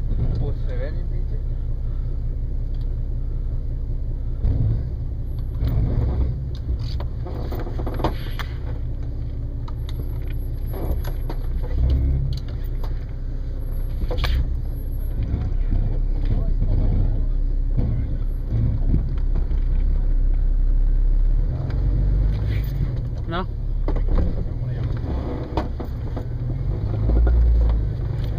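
Jeep Cherokee XJ's engine running at low speed with a steady low rumble as the Jeep crawls up a rock ledge, with occasional sharp knocks.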